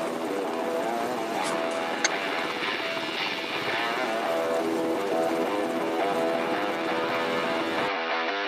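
Steady helicopter noise, the engine and rotor running as it hovers, with music playing underneath.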